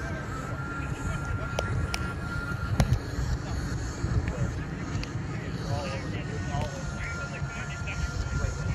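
Three sharp hits on a roundnet ball, from hands and the net, about one and a half to three seconds in, the last the loudest. Under them runs a steady low rumble of wind on the microphone, with faint distant voices.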